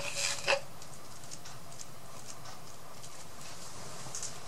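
A brief rustle of handling in the first half second, then steady faint background hiss of a small room.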